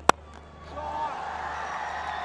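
A cricket bat strikes the ball once, a single sharp crack just after the start, on a shot that goes for six. About half a second later a wash of distant crowd voices and cheering rises and holds.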